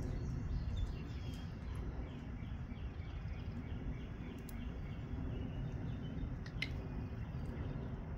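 Outdoor background noise: a steady low rumble with faint bird chirps over it.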